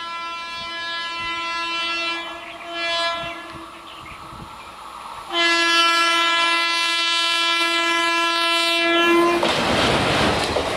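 Electric locomotive horn of an approaching Indian Railways WAP-4 sounding: a held note that fades about two seconds in, a short blast around three seconds, then a louder long blast from about five seconds to nine and a half. Near the end the horn gives way to the loud rush and rattle of the locomotive and coaches passing close by.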